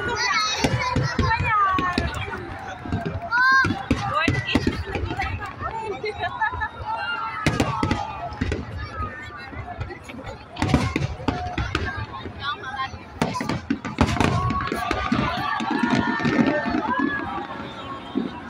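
Aerial fireworks bursting in a string of sharp bangs, mixed with the chatter and calls of a large crowd of onlookers.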